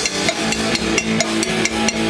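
Live band music: a drum kit keeps a steady beat of sharp strikes under sustained electric guitar notes.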